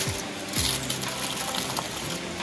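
Soft background music with steady held notes. Aluminium foil rustles briefly about half a second in as it is handled around a sandwich.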